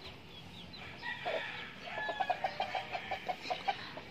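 Backyard chickens clucking, with a quick run of short clucks from about two seconds in and faint high chirps.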